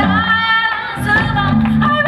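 A woman's voice holding a long sung note over a plucked upright double bass, a live voice-and-bass duo; the bass drops out under the held note and comes back in about a second in.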